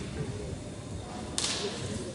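A single sharp slap about a second and a half in, with a short hissing tail, from a gymnast's hands striking the uneven bar. A low murmur of voices in the hall goes on throughout.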